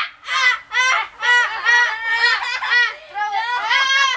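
Child laughing loudly in repeated high-pitched bursts, about two or three a second.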